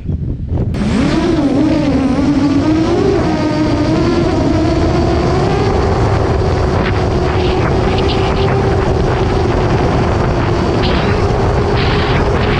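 Brushless motors of a 7-inch FPV quadcopter (T-Motor F40 Pro II, 1600 kV) spinning up about a second in, then whining steadily, the pitch wavering with throttle. Wind buffets the onboard camera's microphone underneath.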